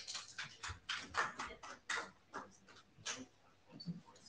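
Meeting-room clatter as a session breaks up: an irregular run of short clicks and knocks, several a second, with faint voices.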